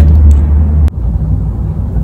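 Low, steady outdoor rumble. About a second in, a sharp click cuts it off and only fainter background noise remains.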